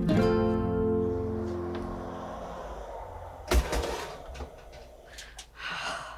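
Acoustic guitar music ending on a strummed chord that rings and fades over about three seconds. About three and a half seconds in, a sharp thump, followed by light handling clatter.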